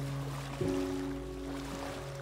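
Slow relaxation music: a low piano chord is struck about half a second in and rings on, over a faint wash of ocean waves.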